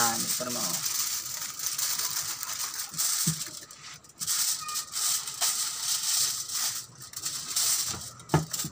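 Aluminium foil crinkling and rustling as it is unrolled, cut and folded around a whole chicken, with short pauses about halfway and near the end.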